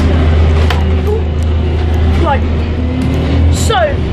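Bus engine and road rumble heard from inside the passenger cabin: a steady low drone.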